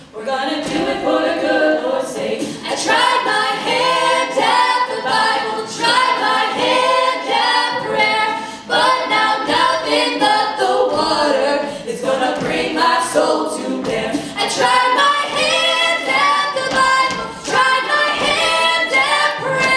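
All-female a cappella group singing in close harmony over vocal percussion. There is a brief drop right at the start, then the full ensemble comes back in.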